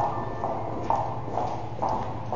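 Footsteps of hard-soled shoes on a hard floor, a person walking at about two steps a second with an even, clicking rhythm.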